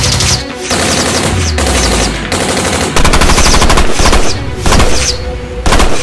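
Automatic gunfire sound effect: several bursts of rapid machine-gun fire with short gaps between them, the loudest bursts in the second half, over a music track.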